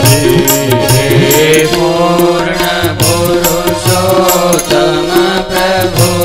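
A Hindu devotional song (kirtan): a voice sings a wavering melody over steady, evenly spaced drum and cymbal beats.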